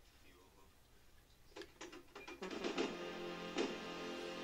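Music starts playing from a small portable Bluetooth speaker about one and a half seconds in. A few separate plucked notes come first, then a full song with sustained notes from about two and a half seconds in.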